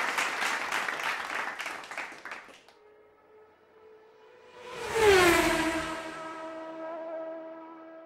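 Edited-in sound effects: an applause-like crackling haze that fades out over the first two and a half seconds, then after a short silence a whoosh about five seconds in that glides down into a held, ringing musical tone, fading away near the end.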